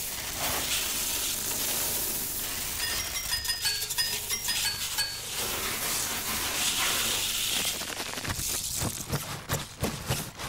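Advert sound effects: a rushing hiss as a stream of chocolate cereal pours onto a worktop, a run of short high chiming notes, then a fizzing hiss from a sink of foam. Near the end come a series of light, sharp taps.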